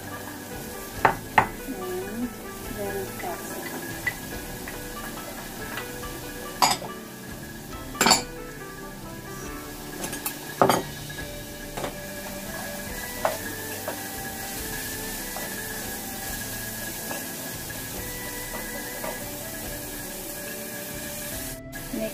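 A wooden spoon knocking sharply against a frying pan and small bowls, about half a dozen times, as diced bell pepper is tipped in and stirred into sautéing onions and tomatoes, with a faint sizzle, over background music.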